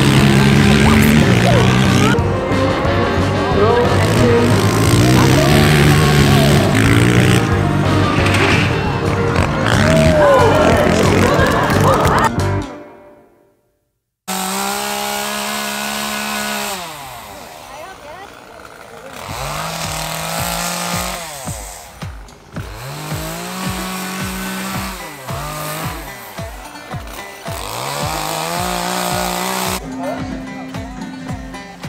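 Quad-bike engines revving during a stunt show, mixed with other busy sound, fading out about 12 seconds in. After a short silence, a petrol chainsaw carving wood, revved up again and again and dropping back each time.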